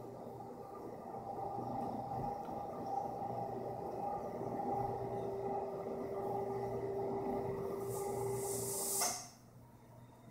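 Somfy motor of a ceiling-recessed motorized projection screen running steadily as it unrolls the screen, a continuous hum. A short hiss comes about nine seconds in, and then the motor stops suddenly as the screen reaches its lowered position.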